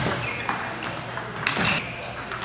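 Table tennis balls clicking sharply a few times on tables and bats, scattered at irregular moments, with the ring of a large hall.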